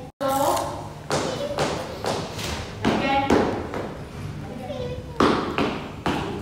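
Voices in a large room, broken by several sharp thuds on a wooden floor, about four of them spread through the clip.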